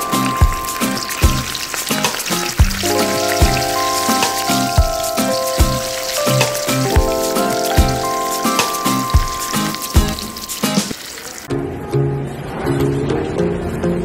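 Food deep-frying in a wok of hot oil, a dense sizzle under background music with sustained notes and a steady beat. Near the end the sizzle stops and different music takes over.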